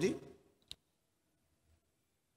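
The last word of a man's voice dies away, then a single short, sharp click about two-thirds of a second in.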